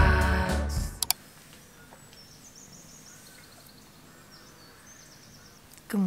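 Background music stops about a second in, followed by two short clicks. Then quiet outdoor ambience with faint high bird chirps.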